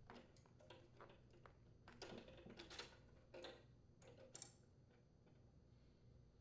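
Faint clicks and small metallic scrapes of pliers working the clutch cable's end free of the upper rotostop bracket on a Honda HRR2167VXA lawn mower, stopping after about four and a half seconds.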